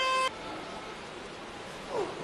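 A steady horn-like tone cuts off suddenly about a third of a second in. After it there is only faint, even background noise in a competition hall.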